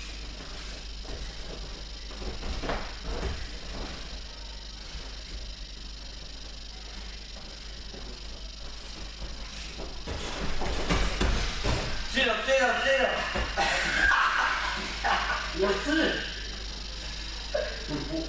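Two wrestlers grappling on a gym mat: soft scuffling, then a louder rush of knocks as one is thrown about ten seconds in. For several seconds after the throw, voices call out.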